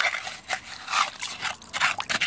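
A hand squelching and scraping through wet, waterlogged beach mud while digging into a flooded hole, in short irregular bursts.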